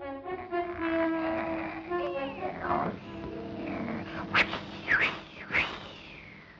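Orchestral cartoon score with held notes. In the second half it is joined by several short squeals that swoop up and down in pitch.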